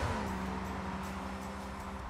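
Sports car's flat-six engine note sliding down in pitch as the car passes, then holding steady and fading as it drives away.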